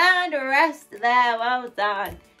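A woman's wordless vocalising: drawn-out sung or whooping notes that slide up and down in pitch, in about three phrases.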